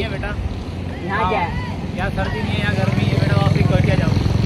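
Men's voices and laughter over the low, pulsing sound of a motorcycle engine running close by, which grows louder in the second half.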